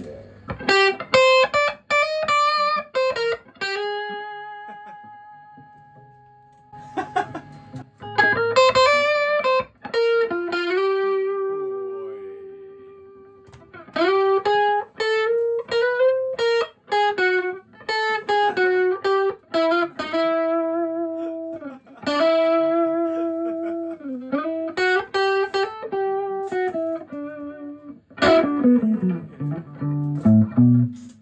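PRS Custom 24 10-top electric guitar, fitted with Funk Ojisan pickups, played through an amplifier in lead lines. Quick phrases of picked notes with string bends and vibrato alternate with long held notes left to ring and fade, and a falling run drops to low notes near the end.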